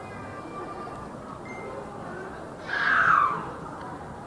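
Shopping-mall ambience, a steady wash of distant crowd noise in a large hard-floored hall. About three quarters of the way through comes one short, loud, high-pitched cry that falls slightly in pitch.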